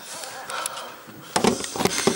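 A voice actor's breathy exhale, then about a second and a half in a short, louder strained vocal effort, a grunt-like cry recorded as a hit sound in a dubbing session.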